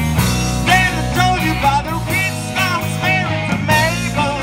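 A live rock band playing loud: electric guitars, bass guitar and a Sonor drum kit through amplifiers, with a lead line of short bending, wavering notes over the steady bass and drums.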